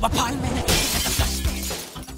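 Background music with a glass-shattering sound effect about two-thirds of a second in, its crash fading away over the next second.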